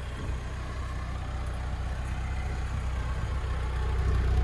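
Lada Niva Legend's 1.7-litre four-cylinder petrol engine idling, a steady low hum that grows gradually louder.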